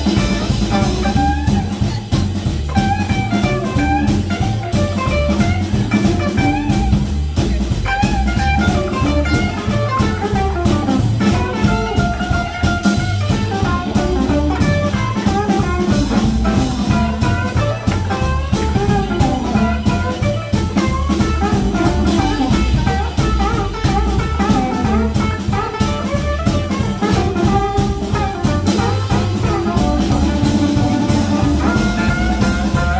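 Live blues band playing: a harmonica cupped against a microphone carries a wavering melody over guitar, upright bass and drum kit.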